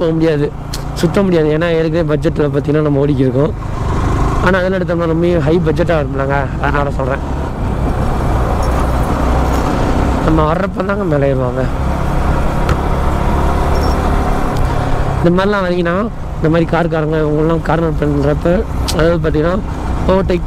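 Sport motorcycle cruising at a steady moderate speed, a continuous engine rumble mixed with wind and road noise.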